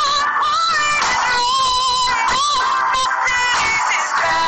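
A man and a woman singing a pop ballad duet over musical accompaniment, holding long, bending notes.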